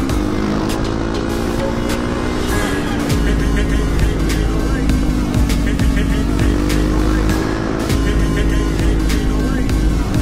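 Motorcycle engine running while riding in traffic, its pitch rising and falling gently, mixed with music that has a steady beat.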